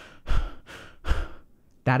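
A man breathing fast and hard to show an angry breathing pattern: three quick, deep breaths in and out in about a second and a half, then a pause.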